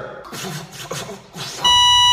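A loud, steady electronic beep sound effect, one unbroken flat tone, starts abruptly about one and a half seconds in.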